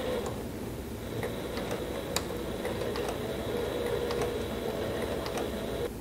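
Sailrite Leatherwork walking foot sewing machine, driven slowly by its servo motor and speed reducer, stitching and back-tacking the start of a seam through upholstery leather. A steady motor hum and a thin high whine that stops near the end run under a tick for each stitch, about two a second.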